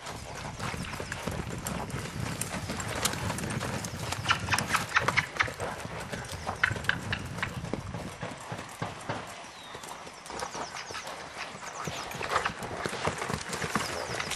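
Hoofbeats of an Appaloosa–Percheron cross horse loping on sand footing: a continuous run of soft thuds and clicks in uneven groups.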